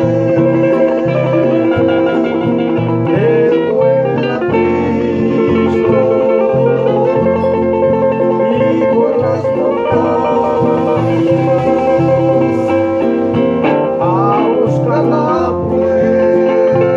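Two acoustic guitars playing together, one a nylon-string classical guitar: a steady strummed accompaniment with a regular bass line under a picked melody.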